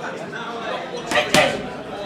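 Boxing gloves hitting focus pads twice in quick succession just past halfway: two sharp smacks with a short ring in the room.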